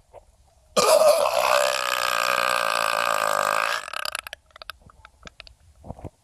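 A man belching one long, loud burp that lasts about three seconds, followed by a few faint clicks.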